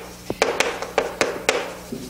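Chalk writing on a chalkboard: a quick run of short taps and light scrapes as the strokes of words are written.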